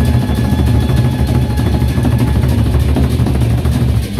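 Gendang beleq ensemble of large Sasak barrel drums played in a dense, fast roll: a loud, steady low rumble with no separate beats, the cymbals rattling above it.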